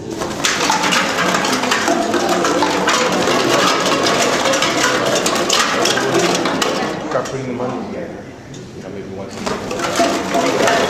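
Costumes of plastic bags, cans, bottles and cardboard rustling, crinkling and rattling as the performers move, a dense crackle that starts just after the beginning and dips briefly near the end. People's voices are mixed in.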